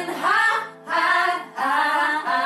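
Several young women singing together in three short phrases with brief gaps between them, over a sustained keyboard chord.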